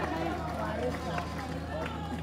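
Crowd of many overlapping voices, well below the speaking voice, over a steady low hum.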